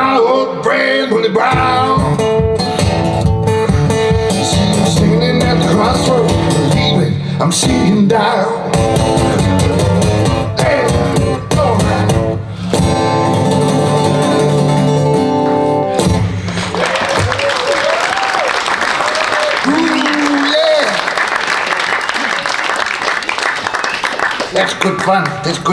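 Solo acoustic blues guitar played with a man singing over it. The song ends about 16 seconds in and gives way to audience applause.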